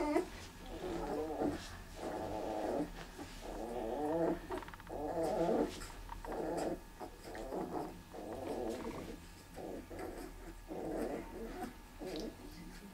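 Young puppy whining in a steady series of about ten short, pitched cries, one roughly every second.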